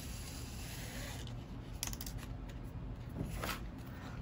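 Faint rustling of grosgrain ribbon handled in the fingers while a needle and thread are drawn through it in a hand-sewn running stitch, with a few brief soft scrapes.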